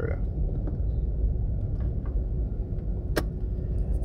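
Steady low rumble of a car's engine and tyres on the road, heard from inside the moving car, with one sharp click about three seconds in.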